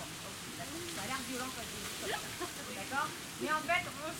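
Voices of people talking in the background, in short snatches, over a steady hiss.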